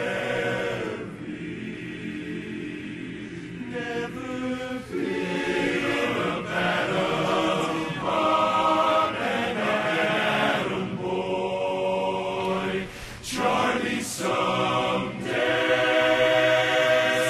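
Men's barbershop chorus singing a cappella, holding and moving through sustained chords, with a short break in the sound about three-quarters of the way through.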